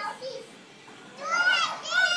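A young child's high-pitched voice: after a short sound at the start and a quieter moment, two drawn-out calls in the second half, each rising and then falling in pitch.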